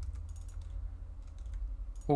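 Computer keyboard typing: a few scattered, faint key clicks over a steady low hum.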